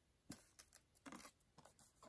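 Faint handling noises of a trading card being picked up and set down: a few light taps and a brief scrape against a near-silent background.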